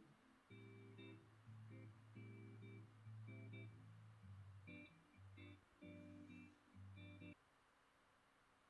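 Guitar recorded directly through a Fender Mustang GTX amp's built-in USB audio interface, played back in low quality: a phrase of separate notes and chords, each held about half a second, that stops about seven seconds in.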